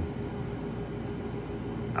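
A 6000 BTU window air conditioner running on its energy saver setting: a steady whooshing fan noise over a low, even hum.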